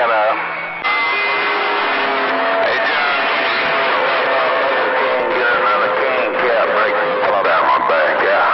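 Magnum radio receiving distant skip stations on a crowded channel: loud static with garbled, overlapping far-off voices and steady heterodyne whistles at several pitches. The whistles are carriers beating against each other. The noise jumps up about a second in, and the longest whistle is a mid-pitched one held for several seconds.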